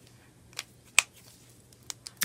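Plastic cap of an alcohol marker clicking: one sharp click about halfway, with fainter ticks before it and near the end.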